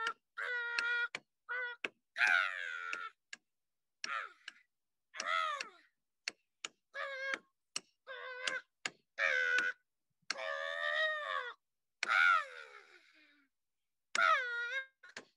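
A woman singing wordless vocal phrases in short calls that swoop up and down in pitch, cutting to silence between them. Sharp taps from a hand-held frame drum struck with a beater fall between the calls.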